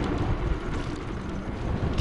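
Wind buffeting the microphone with low road and tyre rumble from a riding Econelo DTR electric scooter, easing a little as it slows into a bend; no engine note.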